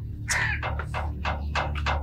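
Crows cawing: many short calls in quick succession, about five a second, over a low steady drone.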